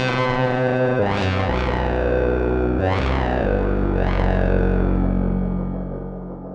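ElectroComp EML 101 analog synthesizer playing held, buzzy low notes that change pitch every second or so. Several notes come with a filter sweep that opens bright and then closes. The sound fades out near the end.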